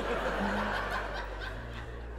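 A group of people laughing and chuckling, dying away after about a second and a half.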